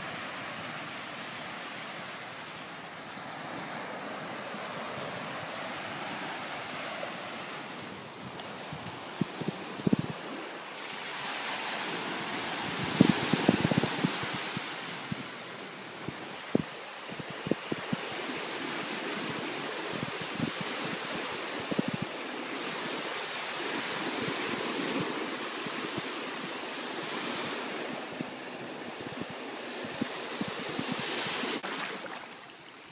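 Small waves washing in and out on a sandy beach, a steady rush that swells and falls back every few seconds. Wind buffets the microphone in low thumps, strongest about a third to halfway through.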